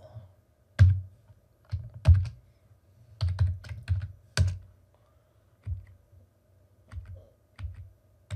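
Computer keyboard typing: irregular keystrokes in short clusters, each with a dull low thump, over a faint steady hum.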